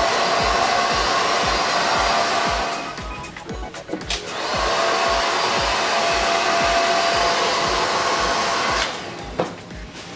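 Handheld hair dryer blowing on damp hair with a steady whine. It drops away for about a second near the middle, then runs again until it switches off about a second before the end. Background music with a steady beat plays underneath.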